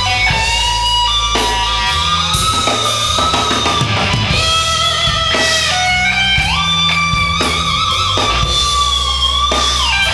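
Live rock band: an electric guitar plays long, held lead notes over bass and drums, stepping up to a higher note about six and a half seconds in and shaking with vibrato near the end.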